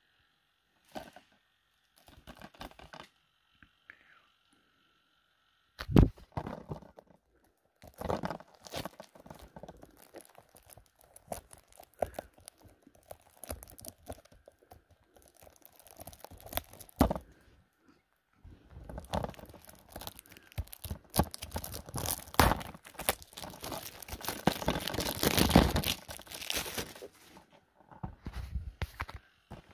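Shrink-wrapped Blu-ray cases being handled: plastic crinkling and rustling in scattered spells, with one sharp knock about six seconds in. The rustling becomes denser and louder over the last ten seconds.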